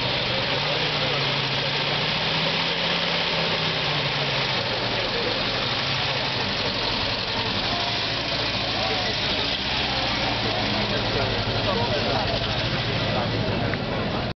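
Peugeot 402's four-cylinder engine running at low revs as the car pulls away slowly, with crowd chatter around it.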